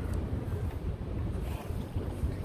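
Low, uneven rumble of wind buffeting the microphone.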